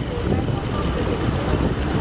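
Wind buffeting the camera microphone as a steady low rumble, with indistinct voices in the background.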